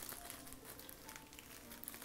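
Very faint room tone with light handling noise as a pair of sunglasses is picked up.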